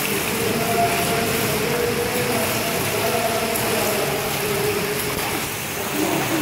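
Steady splashing and churning water from a swimmer doing butterfly stroke, echoing in an indoor pool hall.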